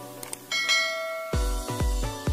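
Notification-bell chime sound effect: a bright bell tone rings about half a second in and fades over about a second. It sits over soft background music, which turns into electronic dance music with deep bass beats about twice a second partway through.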